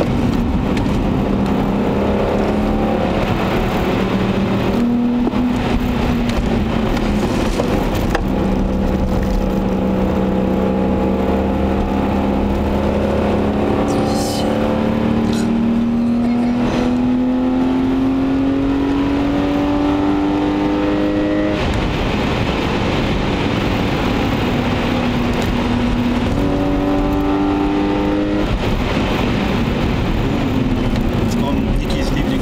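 Inline-six (M50B25TU) of a BMW 525i E34, heard from inside the cabin under way. The engine note climbs slowly through one long pull in gear, then drops suddenly at an upshift about two-thirds of the way through, with a steady rush of road and tyre noise underneath.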